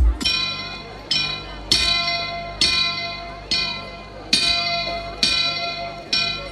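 Recorded devotional music opening with bell strikes: seven ringing bell tones, each under a second after the last and each fading away. This is the introduction to a Ganesha invocation song.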